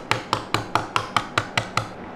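The shell of a hard-boiled black egg (kuro-tamago) being tapped against a hard table to crack it: a quick, even run of about nine sharp taps, roughly five a second.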